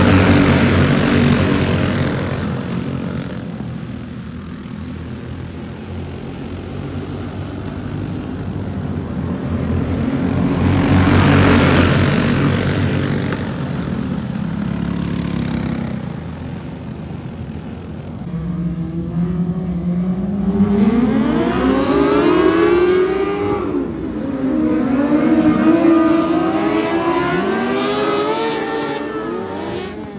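A pack of racing go-karts' small engines running together. They swell loud as karts pass near the start and again around eleven seconds. In the second half, several engines rise and fall in pitch at once as the karts speed up and ease off through the turns.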